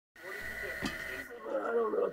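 Rustling handling noise with a single knock about halfway through, then a man's voice begins near the end.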